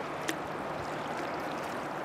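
Steady rush of fast-flowing river water around a drifting boat, with one light click about a quarter second in.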